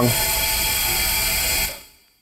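Argon gas hissing steadily through the valve and fill line as it repressurizes a Halotron I agent vessel toward about 220 PSI, with a few high steady whistling tones in the hiss. The sound fades out near the end.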